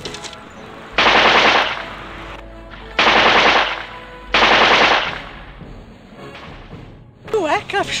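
Three bursts of machine-gun fire, each under a second long, starting abruptly and dying away, spread over about four seconds.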